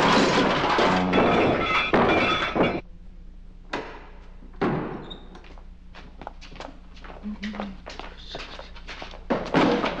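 Heavy wooden castle drawbridge coming down, with loud clattering and knocking that stops abruptly about three seconds in. After that the sound drops to a quiet room with a low hum and scattered small clicks and knocks.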